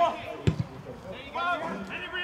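A football kicked once, a sharp thud about half a second in, with players' shouts on the pitch around it.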